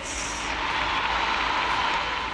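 A large audience in an assembly hall applauding, a steady wash of clapping that starts at once.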